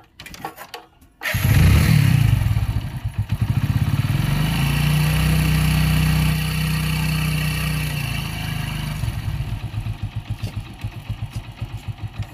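Motorcycle engine starting abruptly about a second in, revving and then running steadily, before settling into an even putt-putt of about five beats a second.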